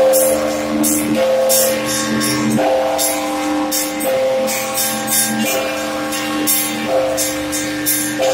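Church bells rung by hand with ropes pulled on their clappers. Small bells chime in a quick, steady rhythm over the ringing hum of larger bells, which are struck afresh about every second and a half.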